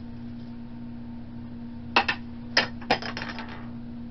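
A tiny hard piece of a blind-box figure dropping and bouncing on a hard surface. It lands with a few sharp clicks about two seconds in, then skitters in a quick run of lighter ticks that die away.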